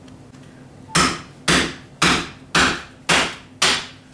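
Small sledgehammer striking a chisel to knock old ceramic tile off a kitchen countertop: six sharp blows about half a second apart, starting about a second in, each with a brief ring.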